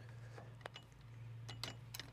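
A few faint metal clicks as a towing tie bar is handled against a tow bar arm, over a low steady hum.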